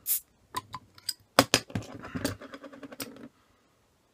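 Crown cap being prised off a beer bottle with a bottle opener: a few sharp metallic clicks and snaps, then about a second and a half of fizzing hiss that stops suddenly.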